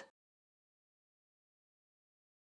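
Near silence: the audio track is blank in the pause between bingo calls.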